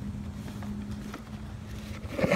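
Electric pressure washer running with a steady low hum, with a few faint handling clicks.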